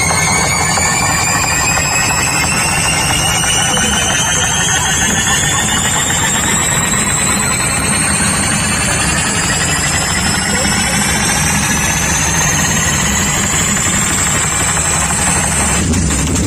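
Large DJ sound system playing a slow electronic rising sweep whose pitch climbs steadily throughout, over a steady deep bass.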